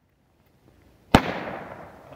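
Silver Salute firecracker going off: a faint crackle of the burning fuse, then one sharp bang a little over a second in, its echo fading over the next second.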